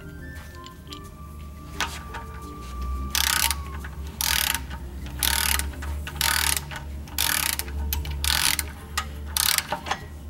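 Ratchet head of a torque wrench clicking in repeated strokes, about one a second, as the crankshaft timing-gear bolt is run down toward 54 ft-lb. Background music plays throughout.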